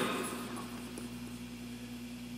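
Quiet room tone with a steady low hum, as the echo of the last spoken word dies away at the start.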